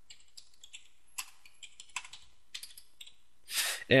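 Typing on a computer keyboard: faint, irregular key clicks.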